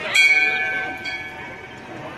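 A small bell struck once near the start, its high ringing tone fading over about a second.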